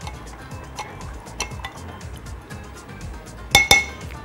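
A spoon stirring a liquid sauce in a glass bowl, clinking lightly against the glass again and again, with two sharper ringing clinks near the end.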